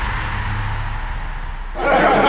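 Low rumble and fading whoosh of a broadcast intro sound effect, dying away slowly; near the end, a room full of men shouting and cheering breaks in suddenly.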